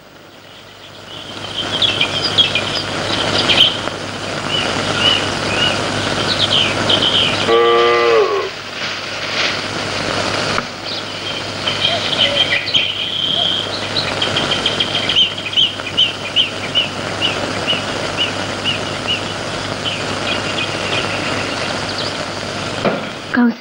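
Outdoor ambience of many birds chirping over a steady rushing noise, with one drawn-out cow low lasting about a second, about eight seconds in.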